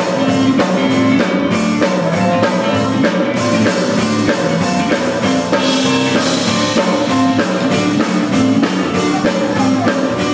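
Live band playing: drum kit, electric bass, electric guitar and a Roland keyboard together in a steady groove, heard in a reverberant room.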